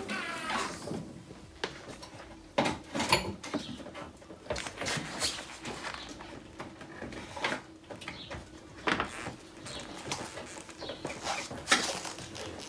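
Scattered small clicks, taps and rustles of hands working a wire under a car's rear bumper.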